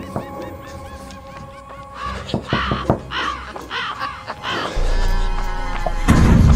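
Eerie intro music made of sustained tones, with a run of about six crow caws in its middle, then a deep low drone coming in near the end.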